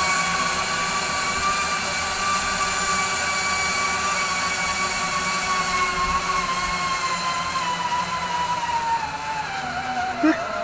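Zipline trolley pulleys running along the steel cable: a steady high whine that slides lower in pitch over the last few seconds.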